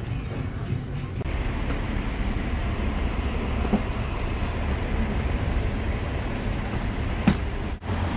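Steady city street traffic noise from passing cars and other vehicles, starting about a second in after a short stretch of quieter shop ambience, with a brief dropout near the end.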